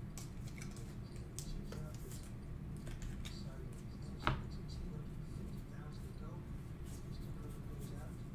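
Trading cards being handled and flipped through by hand: faint scattered clicks and slides of card stock, with one sharper click about four seconds in, over a steady low hum.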